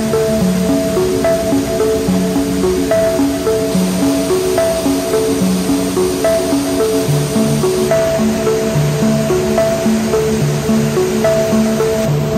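Background music: a melody of short, evenly spaced notes with a steady pulse, over a steady hiss.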